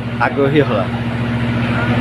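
Steady low mechanical hum, like a motor or engine running, with a brief bit of voice shortly after the start.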